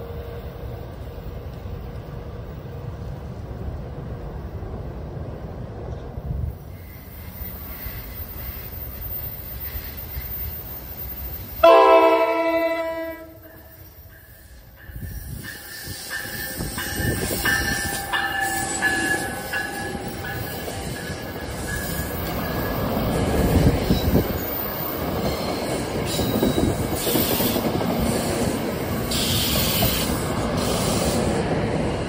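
NJ Transit locomotive-hauled commuter train approaching and passing: a loud horn blast of about two seconds roughly twelve seconds in, then the locomotive and bi-level coaches go by with rising wheel-on-rail noise and a brief high wheel squeal.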